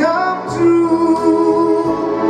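Male singer holding one long note with vibrato from about half a second in, over Yamaha electronic keyboard accompaniment.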